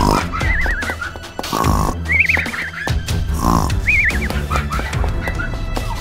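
Cartoon snoring sound effect: three snores about two seconds apart, each followed by a warbling whistle on the out-breath, over background music.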